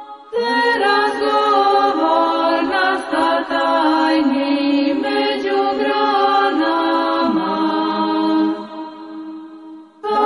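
Orthodox Christian chant sung by voices in held, slowly stepping notes. A phrase begins a moment in and fades away near the end.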